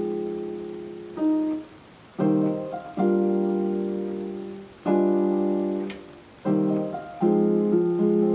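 Yamaha digital keyboard playing slow piano chords, both hands. A new chord is struck every one to two seconds and left to ring and fade, with a few higher melody notes over it.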